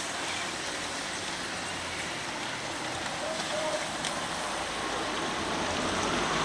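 Steady hiss of a pack of road racing bicycles' tyres on wet asphalt as the riders pass.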